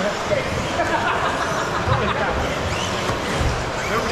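Electric RC buggies running on an indoor carpet track, with a few short rising and falling motor whines, over a steady murmur of voices in a large hall.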